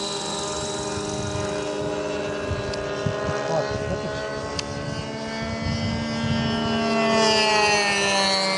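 A 70mm 10-blade electric ducted fan on an RC delta wing in flight, giving a steady high-pitched whine. In the last couple of seconds it grows louder and drops in pitch.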